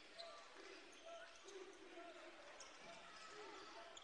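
Faint game sound in a basketball arena: low crowd chatter and a basketball being dribbled on the hardwood court.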